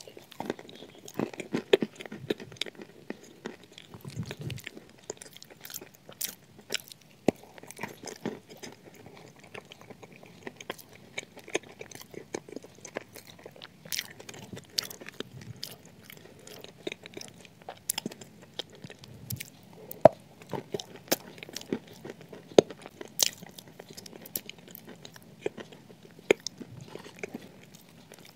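Close-up eating of a shortbread biscuit topped with cream and chocolate spread: a bite at the start, then chewing with many irregular crisp crunches throughout.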